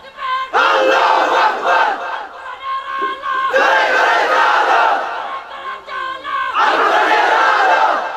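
A large crowd of men shouting together in unison, three loud shouts each about a second and a half long, with short quieter gaps between them: a call-and-response chant from an audience.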